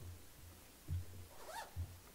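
Footsteps on a raised stage platform: dull thuds about every half second, with a brief squeak about a second and a half in.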